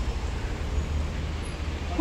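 Steady low rumble of street traffic noise, with no distinct event standing out.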